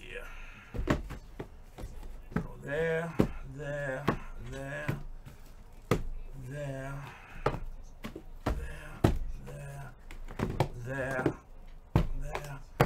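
A man's voice talking in short phrases, broken by sharp knocks and taps as sealed trading card boxes are handled and set down on the table.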